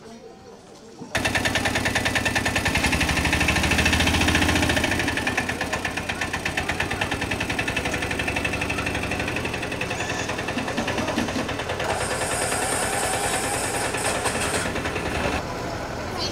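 A vehicle engine running with a rapid, even beat. It cuts in suddenly about a second in, is loudest for the next few seconds, then settles a little lower.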